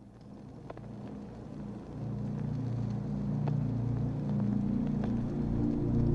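A low, rumbling soundtrack drone fades in from silence and swells steadily louder, holding a few steady deep tones under a faint hiss.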